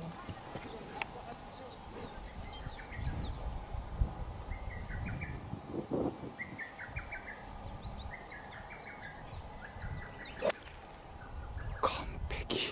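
Birds chirping in short repeated series in the background, then a 5-wood striking a golf ball from the fairway with a single sharp hit a little before the end, a solidly struck shot.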